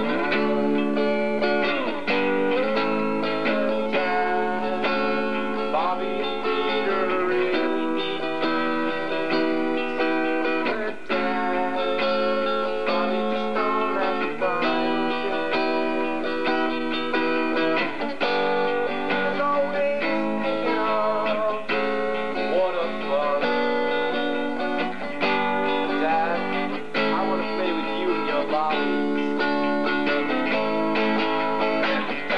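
Guitar music with no voice: held chords that change every second or two, with a few bent notes.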